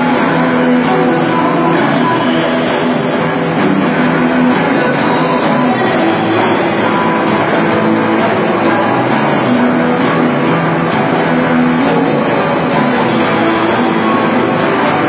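Live rock band playing an instrumental passage: electric guitars over a drum kit, loud and dense throughout.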